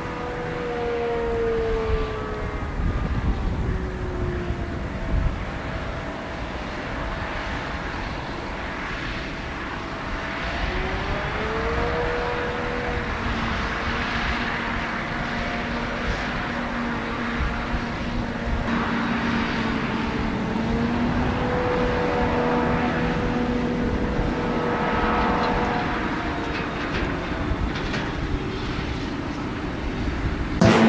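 Claas Jaguar 970 forage harvester and JCB Fastrac tractors running under load: a steady machine drone with engine tones that sink and rise in pitch every few seconds.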